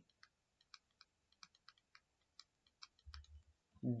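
A scattered series of faint, irregular clicks from the input device used to hand-write a word on the screen, with a brief low rumble a little past three seconds.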